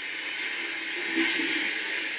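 Steady hiss of background noise, a little louder about a second in, with faint low murmuring sounds there.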